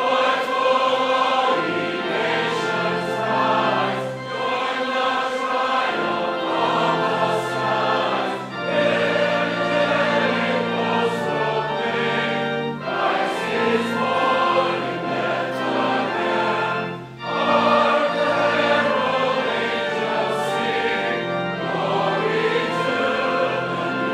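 Church congregation singing a hymn together over a steady accompaniment, in phrases of about four seconds with a brief break between lines.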